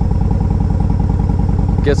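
2012 Yamaha Road Star Silverado's 1700 cc V-twin running steadily under way at road speed, with an even, rapid low beat of firing pulses. A man's voice starts right at the end.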